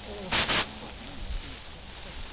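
Two quick blasts on a gundog training whistle, one right after the other, high and shrill.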